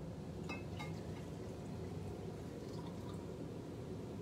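Tap water poured from a glass beaker into another glass beaker of snow polymer powder: faint pouring and dripping, with a couple of light ticks about half a second and a second in, over a steady low background hum.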